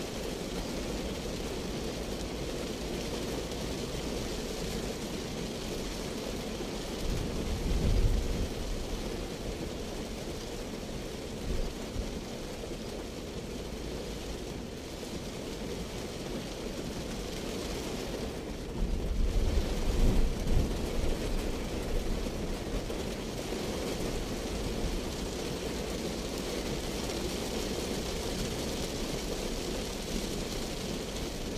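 Heavy rain falling on the roof and windshield of a moving Daihatsu Terios, with steady tyre noise on the wet road inside the cabin. Two deep rumbles rise out of it, one about eight seconds in and a longer one around nineteen to twenty-one seconds.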